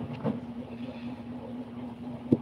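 A steady mechanical hum, with a soft tap about a quarter second in.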